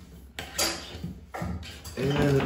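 Romex electrical cable being pushed up through a hole in drywall, scraping and rustling against the drywall edge and wood framing. The scraping comes in two scratchy bursts, the first starting about half a second in.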